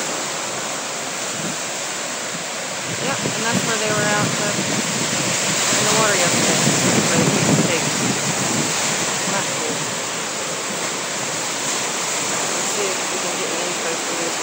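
Ocean surf washing onto a sandy beach, with wind rushing over the microphone; the surf grows louder about six to eight seconds in.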